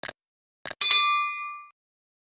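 Subscribe-button animation sound effects: a mouse click, then a quick double click a little over half a second in, then a bright notification bell ding that rings out for about a second.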